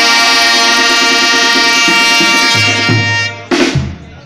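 Mexican banda brass section (trumpets, trombones and tuba) holding a long, loud chord, with drum strokes coming in near the end and a sharp crash about three and a half seconds in, after which the band drops away.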